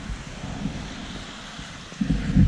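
Wind noise on the microphone: a steady rush that eases slightly toward the end.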